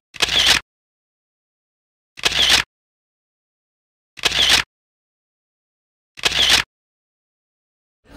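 Camera shutter sound effect, four shutter clicks about two seconds apart, with dead silence between them.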